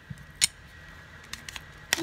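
A few light, sharp clicks and taps of small hard objects being handled: one about half a second in, a couple of faint ticks, and a sharper click near the end.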